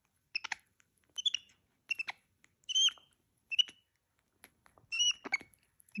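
Pet monkey chirping: a run of short, high squeaks, about one every second at irregular spacing, some with a slight upward slide.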